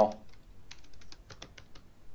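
Computer keyboard typing: a quick run of about a dozen light keystrokes as a short name is typed into a text field.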